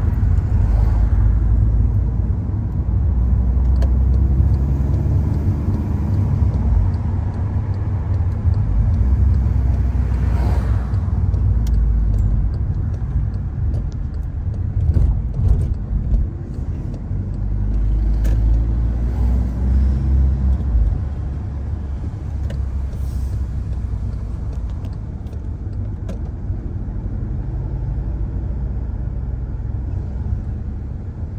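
Road and engine noise of a car driving, a steady low rumble with a few light knocks in the middle.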